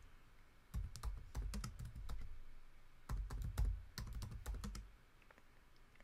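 Typing on a computer keyboard: a run of quick key clicks that starts just under a second in and stops about a second before the end.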